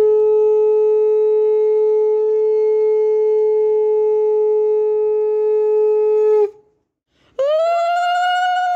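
Conch shell (shankha) blown in a long, steady, loud blast of about six and a half seconds that cuts off. After a short break a second blast starts with its pitch sliding upward.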